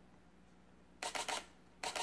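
Sony camera shutter firing in two short continuous-shooting bursts, rapid clicks about a second in and again near the end, while the camera tracks a running subject in AF-C.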